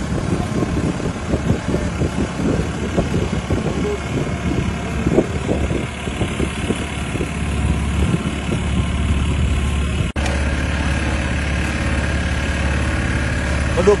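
A boat's engine running steadily under way, a low drone, with a brief break about ten seconds in.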